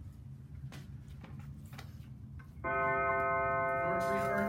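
Low room hum, then a loud, steady electronic alarm tone that starts abruptly about two and a half seconds in and holds.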